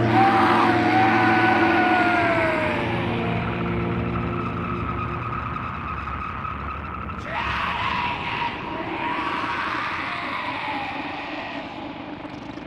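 Noisy ambient outro of a death metal album: a long whine sliding down in pitch over a steady rumbling wash, then a second, shorter whine about seven seconds in, with the whole slowly fading.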